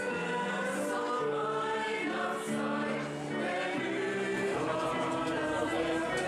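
A mixed choir of men and women singing in harmony, holding long sustained notes.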